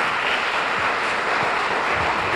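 Audience applauding: steady clapping from a room of listeners.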